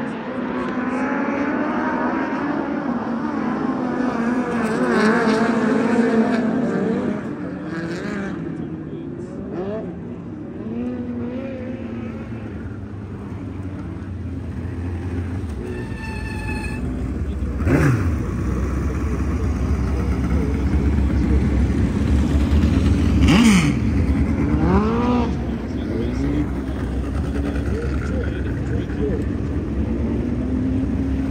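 Midget race car engines running and revving at low speed, their pitch wavering up and down, with a low rumble growing from about halfway through. Twice, near the middle and again a few seconds later, a car passes close by with its pitch dropping.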